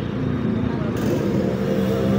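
Street traffic noise from motor vehicles with indistinct voices.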